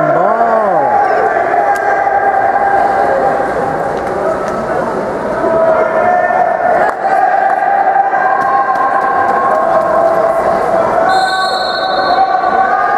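Spectators shouting and cheering on a water polo game, many voices overlapping with long held calls. A high steady tone joins near the end.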